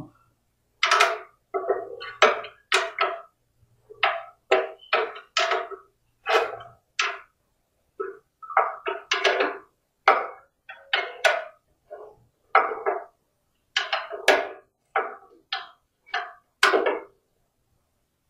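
A wrench tightening the fittings on a steel angle-grinder cut-off stand: a long, irregular run of short metal knocks and clicks, about two a second.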